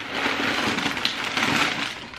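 Crumpled packing paper crinkling and rustling as it is pulled out of a new bag.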